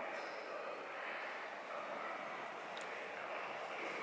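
Quiet, steady background room tone of a large church interior: an even hiss with one faint tick near three seconds in.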